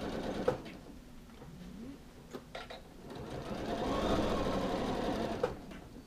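Janome sewing machine stitching a coat sleeve hem in two runs. The first stops just after the start, with a few clicks in the pause. The second, longer run fills the second half and ends with a sharp click.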